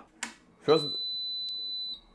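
A single steady, high-pitched electronic beep lasting a little over a second from the robot arm's control electronics as they are switched on. A small click comes partway through, and the beep cuts off sharply.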